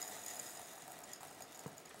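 Faint rustling trickle of coarse bath salt poured from a glass jar into a smaller glass jar, fading away as the pour slows, with a soft tap near the end.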